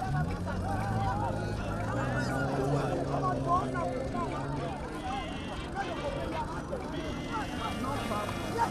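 A vehicle engine running close by for the first few seconds, steady in pitch, under scattered voices of people talking in the street.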